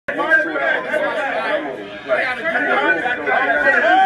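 People talking in a crowded room, their voices overlapping into unclear chatter.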